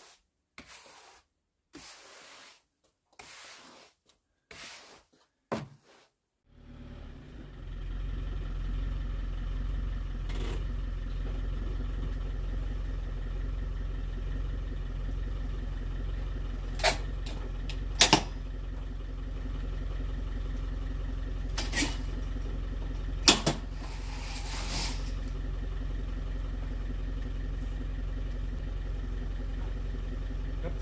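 A push broom sweeping fine sand across paving stones, about one stroke a second, for the first six seconds or so. Then a vehicle engine idling steadily, with a few sharp knocks over it, two close together about halfway and two more a few seconds later.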